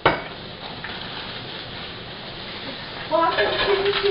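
A single sharp clink of cutlery or a dish against a plate, then a steady hiss; a voice comes in near the end.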